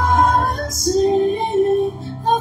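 Women singing a slow worship song with a live church band, the voices holding long notes over sustained keyboard and bass.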